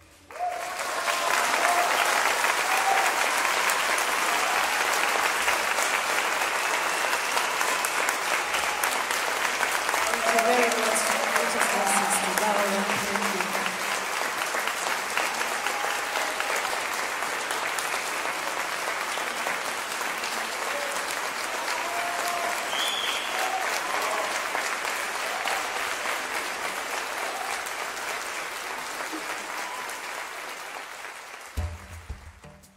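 A large audience applauding in a reverberant church after a piece ends. It breaks out suddenly about half a second in and slowly dies down, with shouts from the crowd and a single short whistle partway through.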